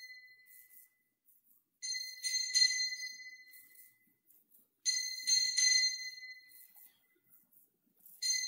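Altar bells (Sanctus bells) shaken in short bright rings about every three seconds, each ring a few quick strikes that fade out. They mark the elevation of the chalice at the consecration.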